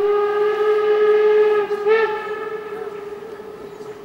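Steam locomotive whistle sounding a long, steady single-pitched blast that breaks off briefly and swells again about two seconds in, then fades slowly away.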